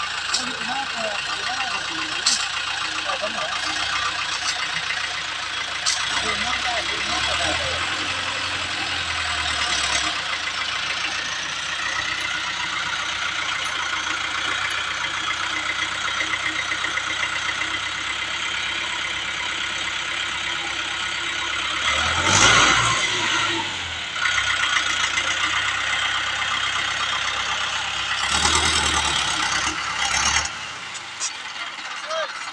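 Mahindra Arjun tractor's diesel engine running to power a hydraulic sugarcane grab loader, surging louder about two-thirds of the way through and again near the end as the loader works. People's voices are in the background.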